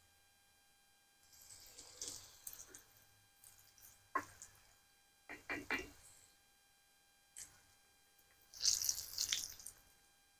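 Faint, intermittent sizzling of fish fillets frying in oil in a cast iron skillet, its camp-stove burner just turned off, with a few light clicks of a utensil against the pan. The loudest sizzle comes near the end.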